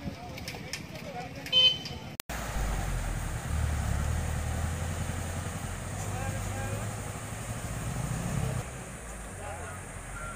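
A short horn toot about one and a half seconds in. After a sudden cut, a truck engine runs with a steady low rumble that drops away near the end.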